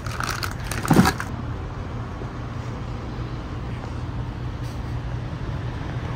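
A thin plastic bag crinkling and rustling for about the first second as it is pulled open, with one sharper crackle near the end of it. After that a steady low hum carries on.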